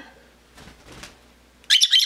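Rosy-faced lovebird giving a short, loud burst of rapid high-pitched chirps near the end.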